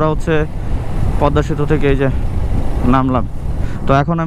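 A Honda motorcycle running at road speed, its engine and the wind making a steady low rumble, with a man talking over it in short stretches.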